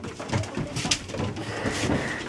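Young puppies making short low growls and grumbles as they play-fight, with paws scuffling and rustling on newspaper.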